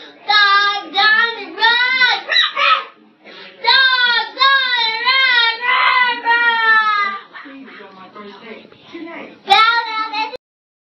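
A young child's high-pitched voice in long, wavering, sing-song cries. It drops quieter about seven seconds in, then comes back loud near the end.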